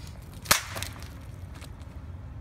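A sharp crack about half a second in, with a fainter one just after, over a steady low rumble.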